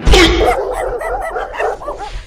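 Dogs barking and yapping in a quick, continuous run that starts suddenly with a loud first bark.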